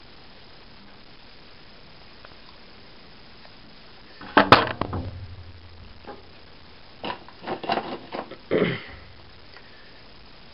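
Plastic tool housing and its parts being handled: a loud clatter of clicks and knocks about halfway through, then a few more clicks and rustles near the end.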